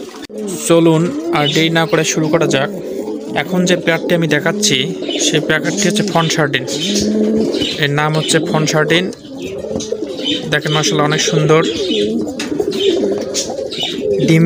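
Satinette pigeons cooing in a loft, many low coos overlapping almost without pause, with a brief lull about nine seconds in.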